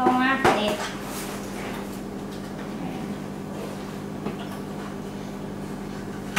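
Steady low hum of indoor room noise, with a single sharp click about half a second in and a few faint small knocks.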